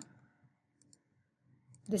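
A faint computer mouse click a little under a second in, against near silence.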